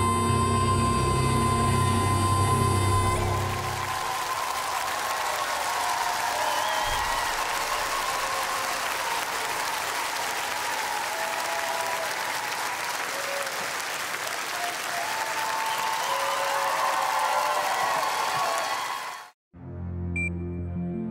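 A girl's singing voice holds a long final note over grand piano accompaniment for about three seconds, then a studio audience applauds and cheers for about fifteen seconds. The applause cuts off abruptly just before the end.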